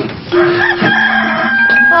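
Short comic transition sting at a scene change: a few held tones together that start a fraction of a second in, the lowest stepping down in pitch about halfway through.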